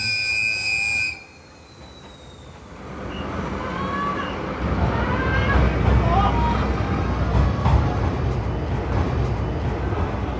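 A locomotive horn gives one short, high blast that cuts off about a second in. Then a deep rumble builds up from about three seconds in as the diesel-hauled train pulls out, with a crowd calling out over it.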